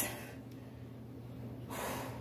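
A woman breathing hard after exercise: one audible breath near the end, over a faint steady room hum.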